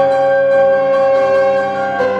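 French horn holding one long, steady note over a piano chord, the horn releasing near the end.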